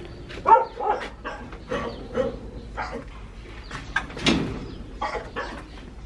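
Birds giving a scatter of short chirps and calls, the loudest about half a second in and just past four seconds in.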